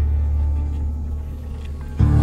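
Animated-film soundtrack: a low, steady rumbling drone with the score's held tones thinning out over it, the whole growing quieter in the second half.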